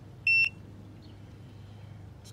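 KONNWEI KW208 handheld battery tester giving one short, high beep about a quarter second in, as it finishes its battery test and displays the result.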